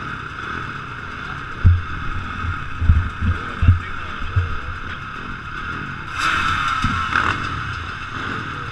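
A helmet-mounted camera's microphone picks up a string of short, deep thumps over a steady background hiss, with a brief louder rush a little after six seconds.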